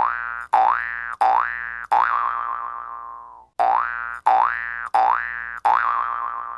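Cartoon 'boing' sound effect used as a segment sting: four quick springy rising boings, the fourth held with a wobble as it fades, then the same run of four again.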